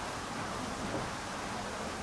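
Steady, even rushing noise of running water at the Laxey Wheel, the water-powered wheel turning beside the power rod.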